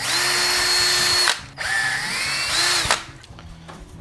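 Cordless drill running in two bursts of about a second and a half each as it bores a hole through a plastic antenna mounting plate. The motor whines steadily in the first burst. In the second it dips in pitch briefly under load, then winds down.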